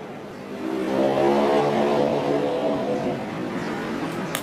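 A motor vehicle's engine passing by: it swells up about half a second in, is loudest in the middle, and fades away near the end.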